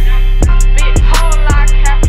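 A hip hop track: a deep sustained bass and regular kick drums under fast, evenly spaced hi-hat ticks.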